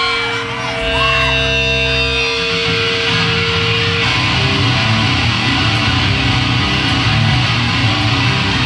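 Live heavy metal band starting a song: distorted electric guitars hold ringing notes for the first couple of seconds, then break into a dense, driving riff about two and a half seconds in.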